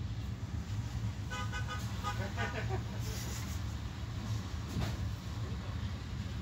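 Steady low rumble of a vintage train running, heard from inside a passenger carriage. Brief voices come in about a second and a half in.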